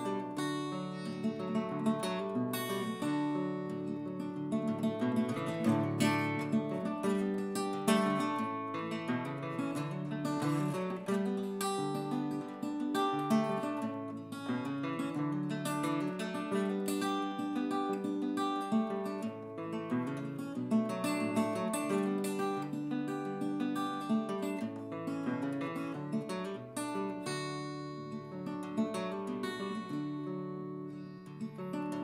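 Solo acoustic guitar with a capo, strummed and picked through an instrumental break of a song, with no voice.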